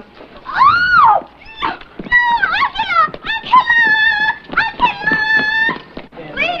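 A woman's high-pitched shrieks and squeals in protest as she is picked up and carried off. One rising-and-falling cry comes about a second in, then a run of held and broken shrieks.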